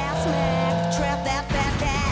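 Cartoon sound effects of a car: the engine runs as the accelerator is floored, then a sudden crash of splintering wood about one and a half seconds in as the car smashes through wooden doors, over upbeat theme music.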